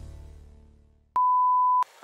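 Music fading out, then a single steady electronic beep at a pitch of about 1 kHz, a little over half a second long, switching on and off abruptly.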